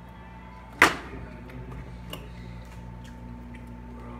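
A single sharp click about a second in, the loudest thing here, over a faint steady hum, with a couple of much softer ticks after it.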